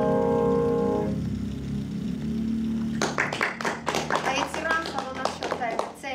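A grand piano's closing chord rings on and dies away within the first second. About three seconds in, audience applause starts and continues.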